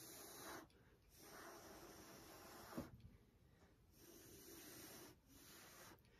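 Faint, breathy puffs of air blown by mouth across wet acrylic paint on a canvas: about four blows of a second or so each, with a brief click near the middle. The blowing pushes the poured paint outward to stretch it and open cells in a Dutch pour.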